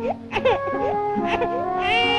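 Background music of held notes, with a baby crying over it in short rising and falling cries, one climbing higher near the end.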